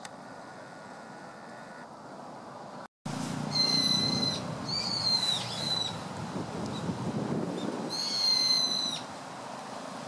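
A bird calling: three long, clear whistled notes, each about a second, the middle one dipping in pitch near its end, over a low background rumble.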